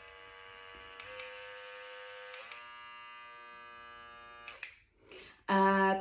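Mary Kay Skinvigorate sonic facial cleansing brush running with a steady electric buzz, its pitch stepping with a click about a second in and again near the middle as the strength of the vibration is changed with the plus/minus button. The buzz stops shortly before the end.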